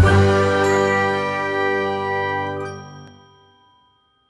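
Soundtrack music: a bright, bell-like struck chord rings out and fades away over about three and a half seconds, dying out shortly before the end.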